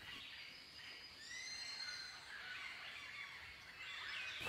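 Faint outdoor ambience with a few faint whistled bird calls, short sliding notes about a second in.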